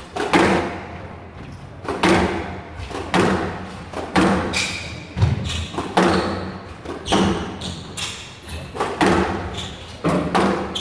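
Squash ball being struck back and forth in a rally, with racket hits and front-wall impacts landing about once a second, each ringing briefly in the glass court. Short high squeaks from court shoes come between the hits.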